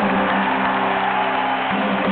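Live band's closing chord held and ringing on, with an audience beginning to cheer underneath.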